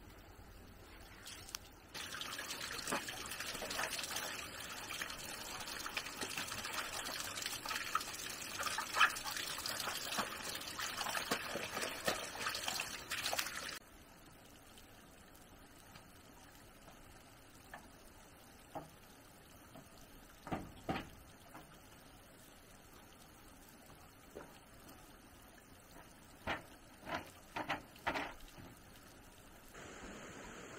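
Water running and splashing for about twelve seconds, starting and stopping abruptly. Afterwards a few light knocks near the end.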